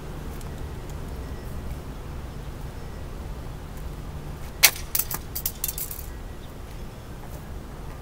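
A quick cluster of sharp clicks and clinks about halfway through, the first the loudest, over a steady low rumble.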